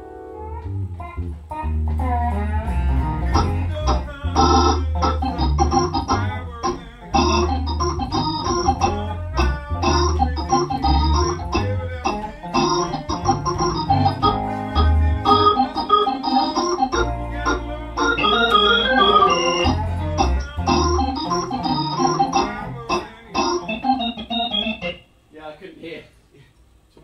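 A band playing: Hammond organ chords over electric guitar, a low bass line and drums with a steady beat. The music stops about a second before the end.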